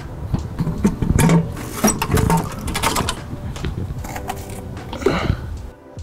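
Metal clanks, knocks and scrapes, many in quick succession, as a stock Mazda Miata intake manifold is worked loose and pulled off the engine.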